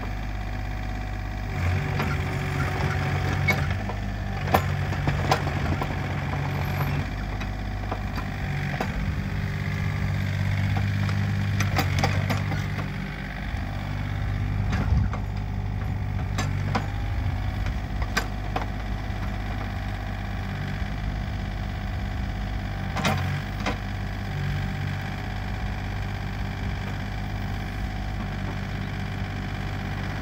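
Diesel engine of a Komatsu 2.8-ton mini excavator running as its boom and arm are worked, the engine note swelling and easing with the hydraulic load. Occasional sharp metal clanks sound over it.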